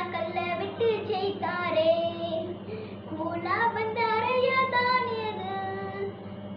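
A young girl singing an action song solo, her voice moving up and down through a simple melody in short phrases.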